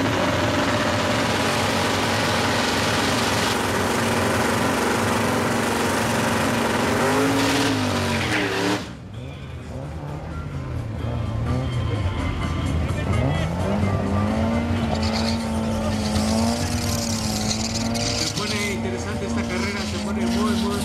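Turbocharged VW Golf Mk1 four-cylinder engine held at high, steady revs during a burnout, with the spinning tyres squealing loudly. The burnout cuts off suddenly about nine seconds in. After that the engine revs rise and fall over and over at a lower level.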